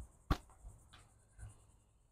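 A sharp click about a third of a second in, then three fainter clicks over the next second.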